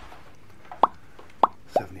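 Three short cartoon-style pop sound effects, each a quick falling blip, the kind edited in as a subscribe-button graphic pops onto the screen. The first comes just under a second in, the other two follow close together near the end.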